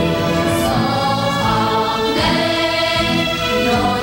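Children's choir singing, holding long notes that move to new pitches every second or so.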